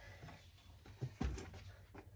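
Faint scraping and rustling of loose soil substrate worked by a gloved hand, with a dull thump about a second and a quarter in as a plastic plant pot is set down into the soil.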